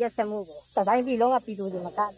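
Speech only: one voice talking steadily, a radio news reading in Burmese.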